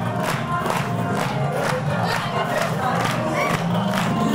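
A group of people clapping in a steady rhythm, about three claps a second, with shouts and cheers over music.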